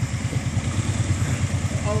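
ATV engine idling with a steady, evenly pulsing low rumble.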